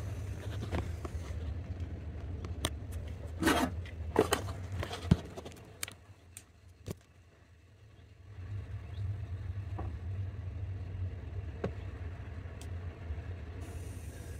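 A low, steady rumble that dies away for about two seconds in the middle and then comes back, with a few light clicks and knocks scattered through it.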